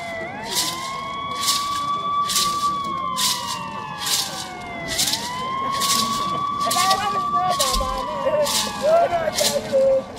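Vehicle siren sounding a slow wail: the tone rises quickly, holds high for a couple of seconds, then falls slowly, about every five seconds, twice. A short crisp hissing stroke repeats alongside it about one and a half times a second.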